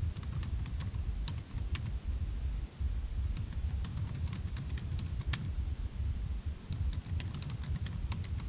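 Computer keyboard typing in irregular runs of keystrokes with short pauses, over a steady low rumble of room noise.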